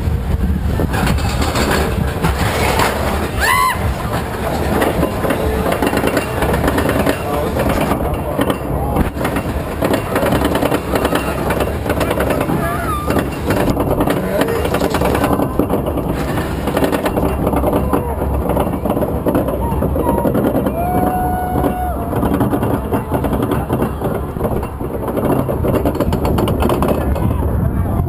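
Onboard sound of the Corkscrew steel roller coaster train riding its track: a steady dense rumble and rattle with wind on the microphone. Riders' voices rise over it as occasional shouts and long calls, one held call about two-thirds of the way through and a falling cry at the very end.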